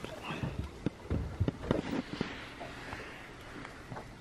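Irregular light knocks and clicks, a few to the second, from handling as a catfish is hung on a hand scale in an aluminum jon boat.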